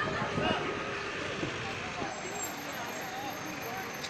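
Street ambience: a few words from people talking close by, over steady traffic-like background noise. A thin, faint high whine comes in about halfway through.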